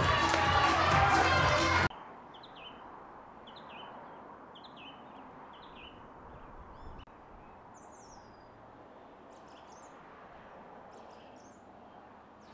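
About two seconds of loud voices and music, cut off suddenly. Then faint birdsong: a small bird chirping repeatedly, about two short notes a second, followed by higher, scattered twittering over a faint steady background hiss.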